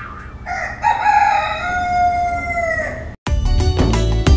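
A rooster crowing once, one long cock-a-doodle-doo that stops about three seconds in. Right after it, music with a steady beat starts.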